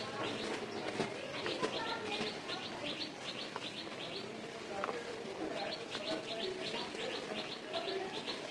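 Dry cement powder and lumps being crushed and sifted by hand, a soft crunching and pouring. Over it, birds chirp in quick runs of short high notes, several a second, pausing around the middle and resuming.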